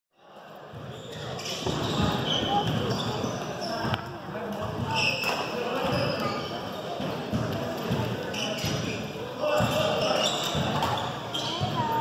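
Echoing gymnasium sound: scattered thumps and knocks on a wooden sports floor, like a ball bouncing, over a hum of distant voices, with a couple of short squeaks.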